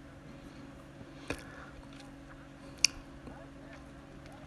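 Low steady background hum with two sharp clicks about a second and a half apart, the second one louder.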